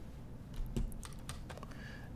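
Faint, irregular clicking of computer keys, several light taps in a row.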